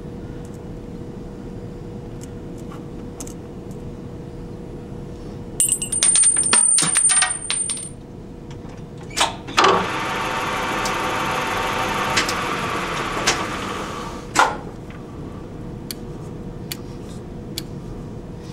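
Metal-on-metal clinks and clicks as a dial test indicator and its holder are set up on a metal lathe's tool post. Then the lathe runs for about five seconds with a steady whine, spinning the part under the indicator to check its runout, and stops with a sharp click.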